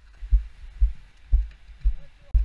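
Footsteps on a gravel track, heard as low dull thuds about twice a second through a body-worn camera.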